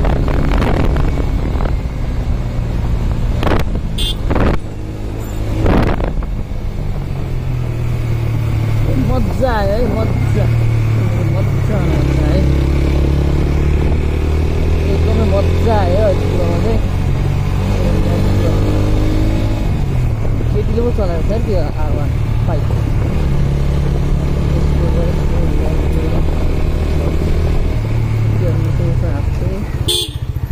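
Motorcycle engine running at speed with wind noise on the microphone, then easing off as the bike slows for a rough, broken road. Its pitch shifts and falls in the middle stretch as the revs drop.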